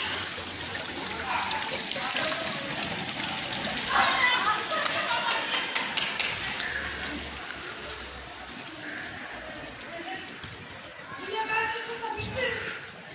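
A few brief voices calling out in the street, about a second in, around four seconds and again near the end, over a steady rushing hiss.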